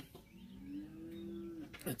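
A cow mooing once: a single long, low moo lasting about a second and a half, faint.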